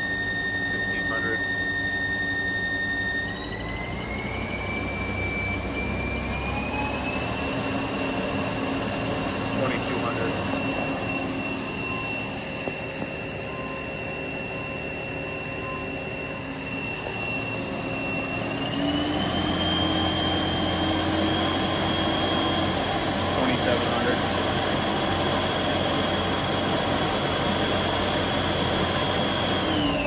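Haas ST-20 CNC lathe spindle running at speed, a steady high whine that steps up in pitch a few times as the spindle speed is raised with the override, and begins to wind down at the very end.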